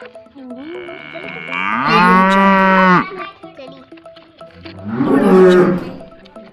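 Cow mooing: one long, loud moo about two seconds in, then a lower, rougher moo near the end.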